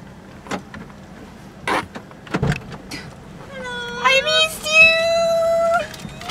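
A few clicks and a low thump inside a car as the door locks are checked. In the second half a woman's voice rises into a high, drawn-out sung note.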